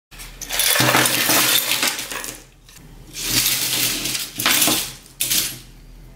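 A pile of small e-waste parts (broken circuit boards and plastic and metal pieces) tipped out of a wooden tray onto a work mat, clattering and scattering in several bursts with short pauses between.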